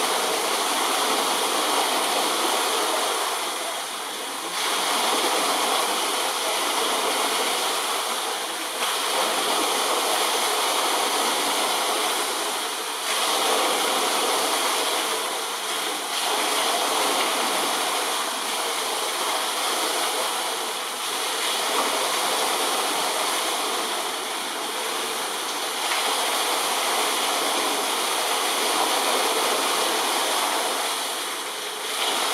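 Steady rushing of running water, swelling and easing slightly every few seconds.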